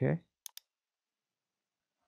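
Two quick computer mouse clicks about a tenth of a second apart.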